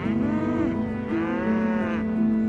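Cows mooing twice, each call rising and falling in pitch, the second one longer, over calm background music with sustained tones.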